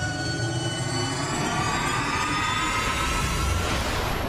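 Cinematic riser sound effect from a logo animation: a swelling noisy whoosh with several tones sliding slowly upward over a low rumble, building toward a hit.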